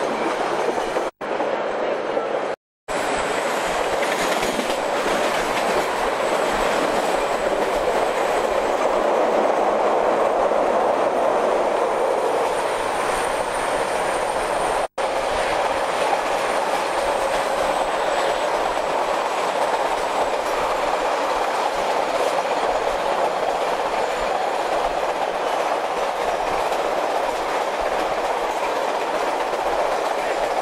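A passenger train running along the track, heard from on board: a steady rush and rumble of wheels on rails with a clickety-clack. The sound cuts out briefly three times, about a second in, near three seconds and halfway through. A faint high whine sits over the middle stretch.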